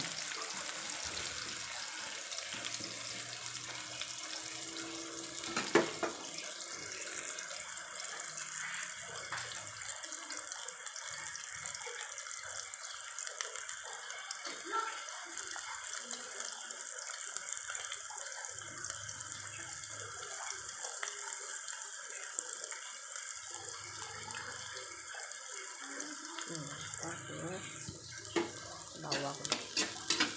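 Sliced onions and garlic sizzling in hot oil in a wok: a steady, even hiss. A metal spatula clicks against the pan once early on and scrapes and clicks repeatedly near the end as the mixture is stirred.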